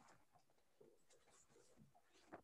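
Near silence: faint room tone on a video call, with one or two tiny ticks.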